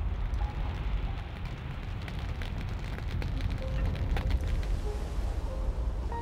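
A steady low rumble with faint scattered crackling, like the sound of a large fire laid under footage of a burning building.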